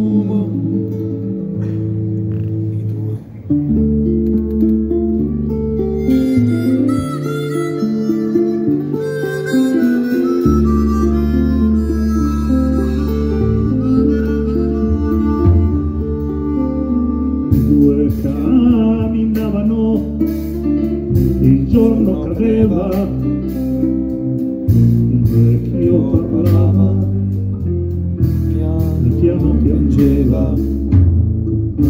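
Live band music: electric bass, drums and guitars playing an instrumental passage, with a lead melody line over held bass notes.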